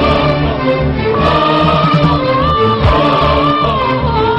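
Arabic song: a woman sings a long, wavering melodic line over a choir and instrumental backing with a steady beat.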